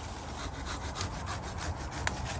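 Handsaw cutting through a thick English ivy stem against a tree trunk, with rapid even back-and-forth strokes. The stem is being severed from the tree.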